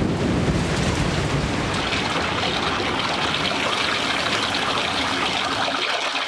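Cartoon sound effect of a torrential downpour and rushing floodwater: a loud, steady wash of water noise that begins suddenly.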